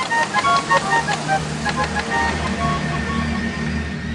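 Reconstructed ancient water organ playing by itself: a pinned drum turned by a water wheel opens the valves, and the pipes sound a quick run of short, high notes over a steady low hum.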